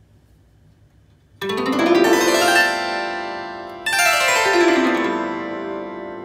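Solid-body bowl-design 16-string lyre harp, its strings nine months old, plucked in a quick upward run of notes about a second and a half in. A downward run follows a little later, and the notes are left to ring.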